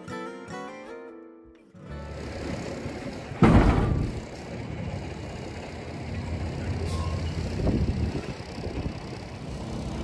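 Guitar music fades out in the first two seconds. Then a semi-truck's diesel engine runs as the tractor-trailer moves slowly toward the loading dock, with a loud, short burst of noise about three and a half seconds in.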